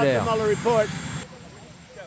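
A man's voice trails off over a steady rushing background noise. The noise cuts off about a second in, leaving a quiet stretch.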